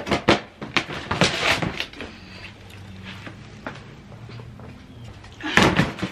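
Hard plastic flip-top storage tote lids being folded and clacked shut, a few sharp knocks and a clatter in the first second or two. Near the end comes a louder scrape and knock as a plastic tote is pulled forward.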